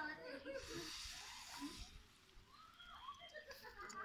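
Beaten egg sizzling faintly as it hits the hot oil in a non-stick frying pan, the sizzle fading after about two seconds.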